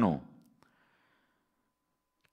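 A man's voice trails off at the very start, its pitch dropping steeply, followed by a faint breath out and then near silence.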